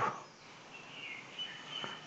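A bird chirps faintly in the background about a second in, over quiet room noise.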